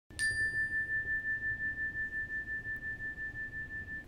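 A single-bar meditation chime, a metal tone bar on a wooden block, is struck once with a mallet just after the start and left to ring. It sounds one clear high tone that fades slowly with a steady pulsing waver, and its brighter overtones die away within the first second.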